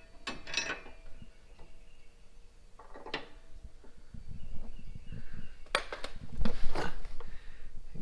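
A steel suspension bracket being fitted by hand against a vehicle frame: scattered metal clinks and knocks with handling rustle, busiest and loudest about six to seven seconds in.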